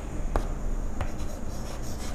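Chalk writing on a blackboard, scratching, with two sharp taps of the chalk against the board.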